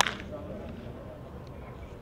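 A single sharp crack of a baseball bat hitting a pitched ball right at the start, with a short ringing tail, followed by faint background voices.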